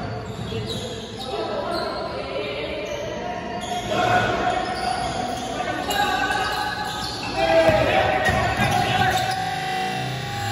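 A basketball bouncing on a wooden gym floor, echoing in a large hall, with people's voices calling out and getting loudest about three-quarters of the way through.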